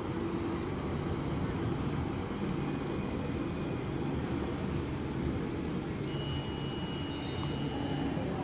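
A passenger ship's engines running with a steady low rumble as it manoeuvres alongside the quay. A thin, steady high tone joins for the last two seconds.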